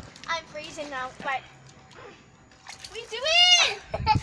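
Children's high-pitched voices, then a quieter moment, then one loud high cry from a girl that rises and falls in pitch near the end.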